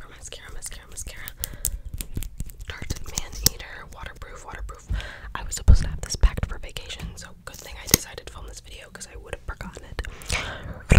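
Close-up ASMR handling of a mascara tube: the tube is turned in the fingers and the wand pulled out and worked near the microphone, giving a run of small clicks, taps and scratchy brushing, with a few heavier bumps about halfway through. Soft whispering runs alongside.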